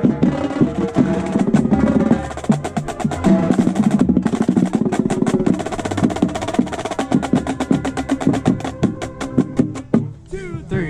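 Marching drumline playing loud and fast: bass drums, snares and tenors striking in dense strokes over sustained brass chords, the piece cutting off near the end.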